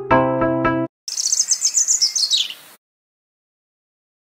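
A recorded Indonesian traditional music track with repeated struck notes cuts off just under a second in. After a brief gap comes a recorded track of birds chirping: a rapid run of high chirps that falls in pitch near its end, lasting under two seconds.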